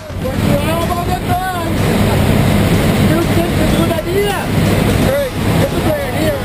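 Steady drone of a skydiving jump plane's engine and rushing air inside the cabin, with people talking loudly over it.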